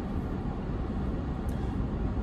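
Steady low rumble of a car's cabin background, with a faint click about a second and a half in.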